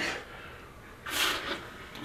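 Breathy laughter: a short, sharp breath at the start and a longer, hissy exhale about a second in.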